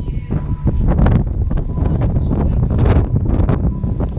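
Wind buffeting the microphone, a loud low rumble that gusts up and down.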